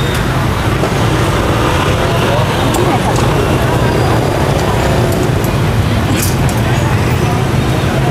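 Busy street-side background: a steady hum of road traffic with indistinct voices of people around, and a few faint clicks.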